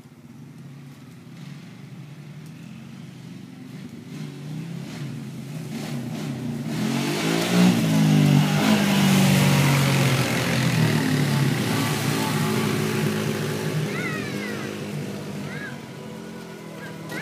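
ATV (four-wheeler) engine approaching, passing close by and moving away. It grows steadily louder, is loudest about eight to ten seconds in with its pitch bending as it goes past, then fades.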